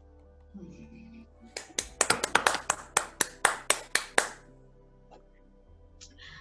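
One person clapping: a quick, even run of about fifteen hand claps starting about a second and a half in and lasting under three seconds.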